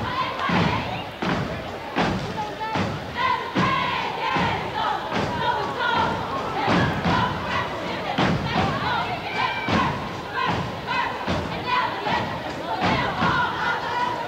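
A step team's feet stomping on the floor in unison, in a steady rhythm, with crowd voices underneath.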